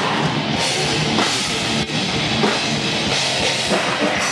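Live heavy rock band playing loudly: electric guitars over a driving drum kit.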